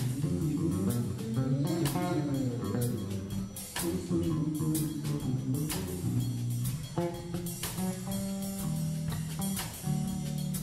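Live band jamming instrumentally: electric bass and electric guitar over a drum kit with cymbal and drum hits.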